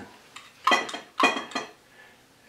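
Metal spoon stirring vinaigrette in a small glass mason jar, clinking against the glass twice about half a second apart, each strike ringing briefly, after a lighter tick.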